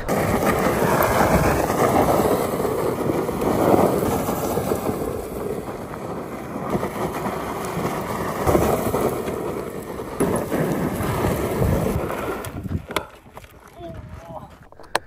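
Upgraded Kayo EA110 electric quad sliding in circles on loose dirt: tyres scrabbling and spraying gravel, mixed with wind buffeting the microphone. The noise swells and dips and falls away sharply near the end.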